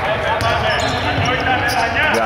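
A basketball being dribbled on a hardwood court, with voices over it.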